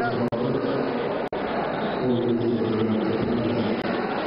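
Voices and chatter in a sports hall, with the sound cutting out twice very briefly.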